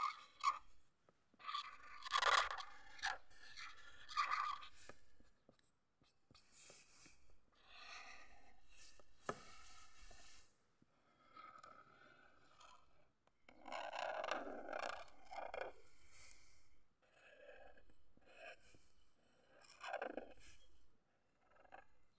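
Felt-tip marker drawing on paper: scratchy strokes of the tip across the sheet in irregular bursts, with short pauses between lines.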